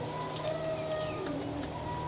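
Young teddy pigeons cooing softly, a few short low coos in the middle, over a steady low hum.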